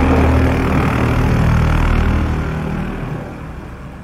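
Channel-intro sound effect: a loud noisy rush over a low humming drone, fading away over the last second and a half.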